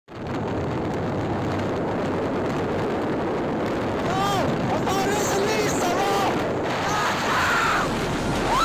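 Steady rushing wind noise on the microphone of a phone filming from a moving motorbike. From about four seconds in come several short, high-pitched vocal calls whose pitch slides up and down.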